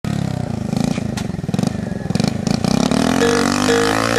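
Small motorcycle engine running and being revved in uneven pulses during a stunt. Music comes in about three seconds in.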